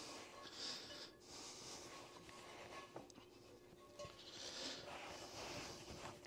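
Faint swishing of a cloth towel wiping a wet cast iron skillet dry, with a couple of soft clicks.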